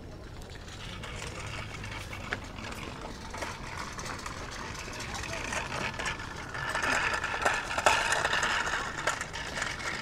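Busy outdoor ambience: faint distant voices over a steady background hiss, with a few light clicks. The hiss grows louder in the second half.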